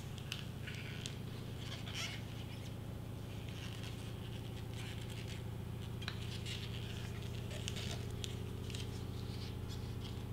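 Soft, scattered rustling and scratching of a paper candy wrapper being pressed down and smoothed by hand, over a steady low hum.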